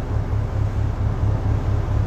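The low, steady, pulsing rumble of a ship's engine heard on deck while under way, with a faint hiss of wind and water over it.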